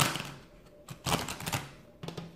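A deck of oracle cards being shuffled by hand, heard as a rapid crackly flutter of card edges in two bursts: one fading out just after the start, and another of about half a second starting about a second in.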